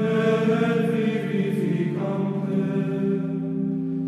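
Background music: a slow choral chant of long held notes sung in chords, the chord changing about halfway through.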